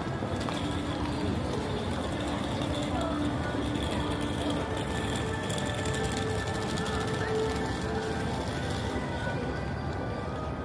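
Busy city street ambience: a steady hubbub of many people talking and traffic noise, with music playing that holds a few long notes.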